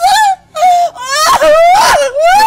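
A woman wailing in loud, high-pitched, drawn-out cries. A short cry comes first, then a brief break, then one long cry that climbs in pitch near the end.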